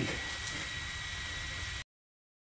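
Byroras BE100 laser engraver running while cutting cardboard: a steady machine hum with a thin high whine. The sound cuts out abruptly near the end.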